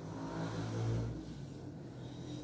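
A motor vehicle's engine passing by, a low steady hum that swells to its loudest about a second in and then fades.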